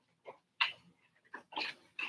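A few short rustles and scrapes of robe cloth and hand movement close to the microphone, as a phone is picked up.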